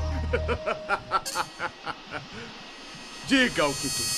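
Sampled Portuguese-dubbed Dragon Ball Z voice clip: a run of short, evenly spaced voice syllables, then a longer voiced sound near the end, over a faint steady buzz. A heavy bass beat cuts off about half a second in.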